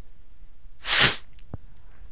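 A man's single short, breathy sneeze about a second in, followed by a faint click.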